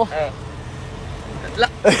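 Toyota pickup's engine idling, a low steady hum, with a short spoken word and loud talk near the end.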